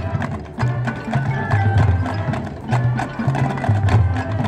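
High school marching band playing: sustained low brass notes in short blocks under sharp, frequent percussion clicks and mallet-keyboard notes.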